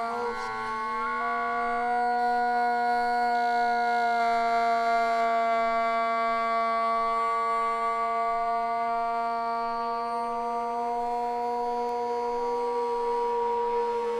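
Hardstyle track in a beatless breakdown: long held synthesizer chords over a steady drone, with no kick drum. The upper notes step to new pitches a couple of times.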